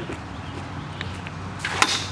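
Footsteps on a gravelly riverbank, then a short splash of water near the end as a landing net is dipped into the river to land a hooked fish.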